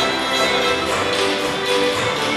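A fiddle reel played by a large folk fiddle orchestra, with a lead fiddle over double bass and guitars, the music going on without a break.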